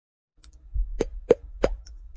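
Three quick popping sound effects about a third of a second apart, the kind laid over an animated like, coin and favourite button burst, with a low rumble underneath.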